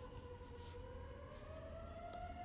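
A faint siren: one held tone rising slowly in pitch.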